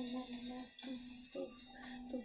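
A woman singing, holding long, level notes, with a short break about a second in before the next note.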